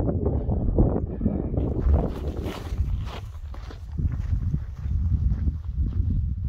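Wind buffeting the microphone on an exposed mountain ridge: an uneven low rumble that rises and falls, with a few soft scuffs around the middle.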